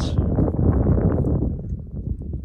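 Wind buffeting the microphone: a loud, gusty low rumble that eases off near the end.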